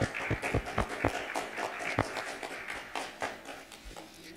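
Scattered hand clapping from an audience, with a few dull thumps from the handheld microphone knocking during a hug.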